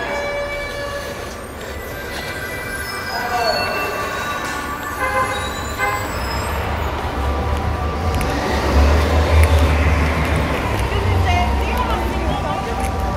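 New York subway station: a train rumbling in, its low rumble building about seven seconds in, with high steady metallic squealing tones from the wheels and rails earlier on.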